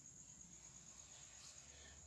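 Near silence: room tone with a faint, steady high-pitched tone.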